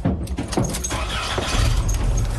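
Clicks and rattles as someone climbs into a USPS mail delivery truck, then a steady low engine rumble from the truck setting in about one and a half seconds in.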